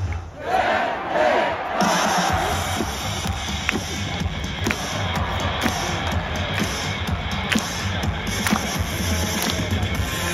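A crowd shouting together for about the first two seconds, then loud stadium PA music with a steady beat starts and plays on for the cheerleaders' dance.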